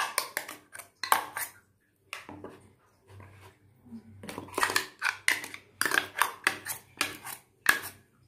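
A steel spoon scraping and clinking against a steel container as thick batter is scooped out into a plastic bowl: quick runs of sharp scrapes and clinks, a pause in the middle, then a longer run.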